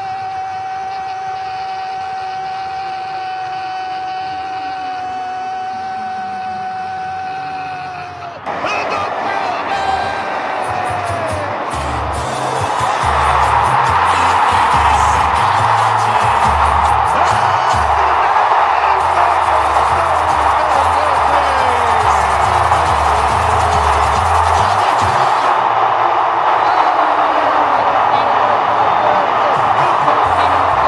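A Brazilian radio narrator's long held "Gol!" shout, one steady sustained note that sags and breaks off about eight seconds in. Then a loud stadium crowd roaring over a heavy low beat, swelling louder around thirteen seconds in.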